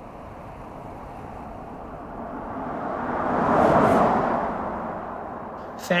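An all-electric 2026 Mercedes CLA passing by: tyre and wind noise rising to a peak about four seconds in, then fading. No engine note is heard.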